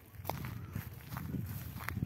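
Footsteps of a person walking over grassy dirt ground, the steps growing louder toward the end.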